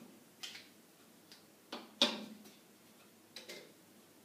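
Short sharp clicks of flat pieces being moved and set down on a wall-mounted demonstration chess board: four or so separate clicks, the loudest about two seconds in.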